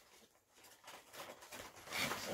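A dog rummaging in a cardboard box, tearing and rustling the paper packing and cardboard: faint, scattered crackles that start about halfway through, after a near-silent first second.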